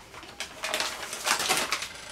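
A sheet of paper rustling and crinkling as it is handled and moved across a cutting mat, a dense run of crackles lasting a little over a second.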